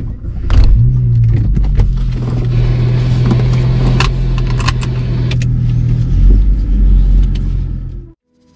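A car engine starting about half a second in, then running steadily, heard from inside the cabin. A few sharp clicks and rattles sound over it, including a seatbelt being fastened.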